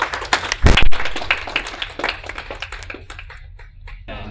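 A small audience applauding, the clapping thinning out and dying away near the end. A loud thump close by, a little under a second in, is the loudest sound.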